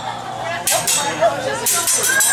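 Voices talking at the table, with two sharp metallic clinks about a second apart from a chef's steel spatula striking the hibachi griddle.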